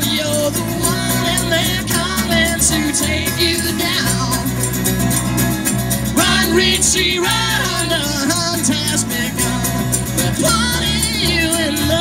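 A live band playing through a PA: strummed acoustic guitars and an electric guitar with singing, running steadily.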